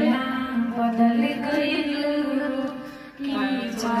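A woman singing a slow Bhojpuri song unaccompanied into a microphone, holding long, sliding notes; she breaks off briefly about three seconds in, then starts the next phrase.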